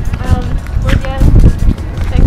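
Faint voices and music over a low rumble of wind on the microphone and footsteps while walking.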